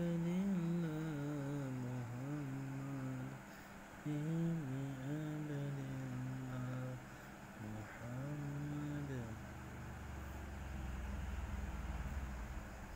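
A person humming a slow tune in a low voice: three long, held phrases with short pauses between them. A low rumble comes in near the end.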